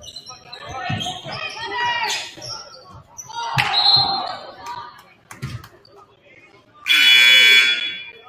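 Gymnasium scoreboard horn sounding once for just under a second near the end, the loudest sound here. Before it come shouting voices, a few basketball thuds on the hardwood and a short shrill whistle blast about halfway, as play is stopped for a referee's call.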